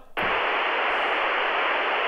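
A steady hiss of radio-style static, with no pitch or note in it, starting abruptly. It stands in for a piano note as a tone-deaf listener hears it.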